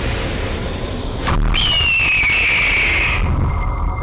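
Sound effect of a hawk's scream: after a sharp hit about a second and a half in, one long cry that falls in pitch, over a low rumble.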